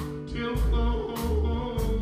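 A small band playing a country song live: electric guitar, upright bass and electric keyboard over a steady beat of drum hits about every 0.6 s.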